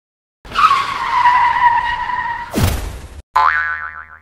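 Cartoon sound effects: a tyre screech lasting nearly three seconds, a sharp hit with a quick falling swoop about two and a half seconds in, then a short wobbling boing near the end.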